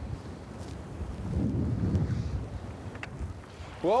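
Wind buffeting the microphone outdoors on open water: a low rumble that swells in the middle, with a couple of faint clicks.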